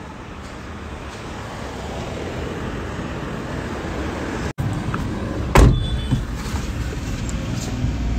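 Steady traffic and road noise that slowly grows louder, with a single loud thump about five and a half seconds in, typical of a car door being shut as he gets in.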